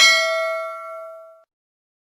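A single struck, bell-like ding that rings and fades away over about a second and a half.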